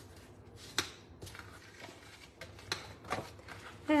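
Cardstock being folded and creased along its score lines with a bone folder: soft rubbing and paper rustle, with a few light clicks and taps.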